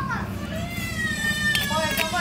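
High-pitched voices, children among them, chattering and calling out, one voice drawing out a long falling note. A metal spoon stirring papaya salad in a stone mortar gives a couple of light clicks near the end.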